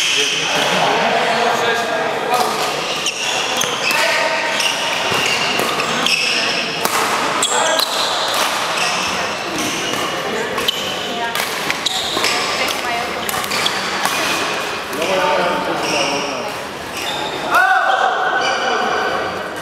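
Badminton doubles rally: repeated sharp racket strikes on the shuttlecock and squeaks of shoes on the hall floor, with a background of voices in a large sports hall.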